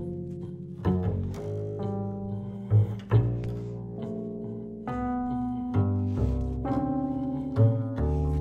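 Double bass plucked pizzicato together with a Yamaha Reface CP electric piano, sounding a string of notes about one a second. Each bass note is paired with a keyboard note a major seventh above, and the interval moves up step by step by whole tones as an intonation exercise.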